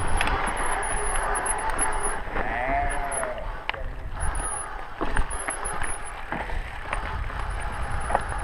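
Mountain bike descending a dirt singletrack: tyres on dirt and a steady wind rush on the microphone, with the bike rattling and knocking over roots and bumps. A short wavering tone rises and falls about three seconds in.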